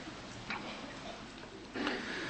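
A congregation getting up from rows of chairs: faint rustling and shuffling, with a sharp click about half a second in and a louder rustle near the end.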